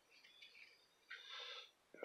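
Near silence, with a faint, brief rustle about a second in from paper trading cards being handled and sorted.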